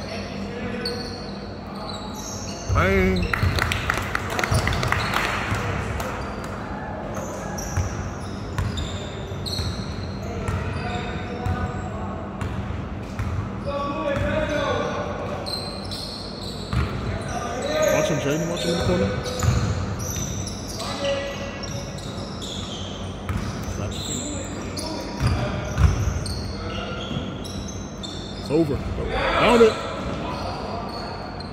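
Basketball dribbled on a hardwood gym floor during play, short knocks coming steadily throughout, with players' shouts ringing in the large hall and loudest a few times.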